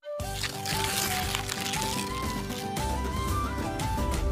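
Background music: a bright melody of short stepping notes over a steady accompaniment, starting straight after a moment of silence.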